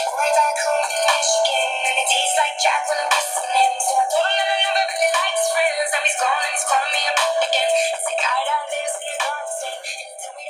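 A pop song with singing playing through the smart clock's small built-in speaker, thin with no bass, easing off in level near the end.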